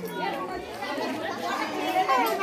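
Chatter of a small group of women, several voices talking over one another at once.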